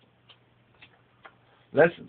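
Faint, slightly irregular clicks, about one every half second, over a low steady hum in a quiet room; a man starts to speak near the end.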